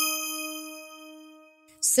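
A single bell-like chime, struck once and ringing on one clear pitch with bright overtones, fading away over about a second and a half. It serves as the show's segment-transition sting.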